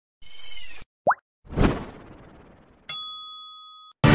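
Animated logo sting made of sound effects: a short swishing sound, a quick rising pop, then a whoosh that swells and fades. About three seconds in comes a single bright bell-like ding that rings out for about a second.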